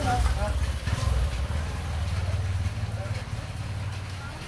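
Low, steady rumble of an idling motor vehicle engine, easing off a little past halfway, with a brief voice at the very start.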